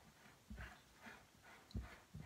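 Faint scraping of a silicone spatula stirring dry flour mix in a glass bowl, with two soft low thumps, about half a second in and near the end.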